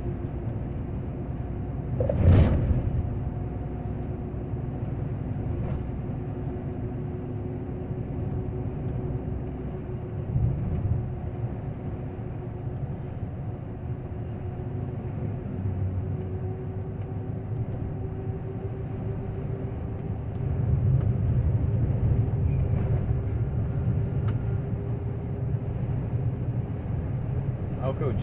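Inside a semi-trailer truck's cab on the move: steady engine drone and road rumble. There is one sharp knock about two seconds in, and the rumble grows louder from about twenty seconds in.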